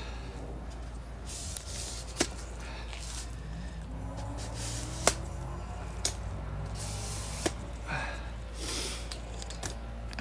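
Phone-and-tripod handling noise: scattered sharp clicks and rustles over a steady low rumble as the camera is moved and repositioned.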